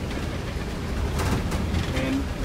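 Interior of a moving school bus: steady low engine and road rumble, with a few brief rattles a little after a second in.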